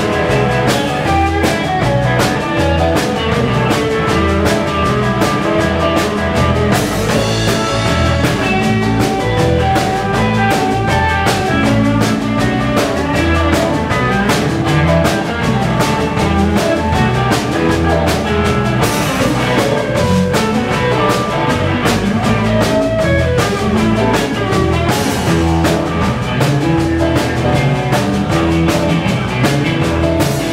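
Live electric blues band playing an instrumental passage: electric guitars, bass guitar and drum kit, loud and steady with a regular drum beat.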